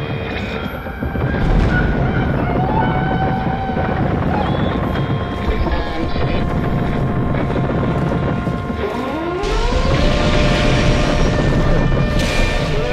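Loud, dense rumble of aircraft engines, with a whine that rises about nine seconds in and then holds steady.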